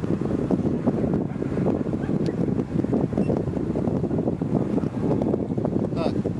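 Wind buffeting the camera microphone: a steady low, crackling rumble.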